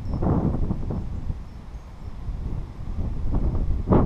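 Wind buffeting the microphone in uneven gusts, a low rumbling noise that swells shortly after the start and again near the end.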